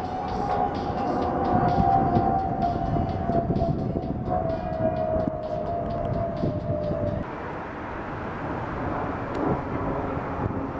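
A steady whine slowly falling in pitch over a dense rumble with rapid faint clatter, typical of a passing train or other large vehicle; it cuts off abruptly about seven seconds in, leaving a lower rumble.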